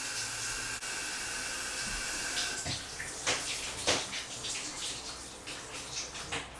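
Shower running behind a curtain, a steady hiss of falling water, with a few short knocks in the second half.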